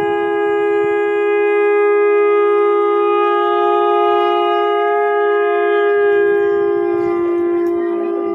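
Two ritual horns blown together in one long, unbroken note at two slightly different pitches, sounded for the temple deity's aarattu ritual bath.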